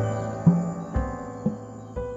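Ambient music: soft piano-like keyboard notes struck about twice a second, each fading away, over a held low tone, with a steady high shimmer above them.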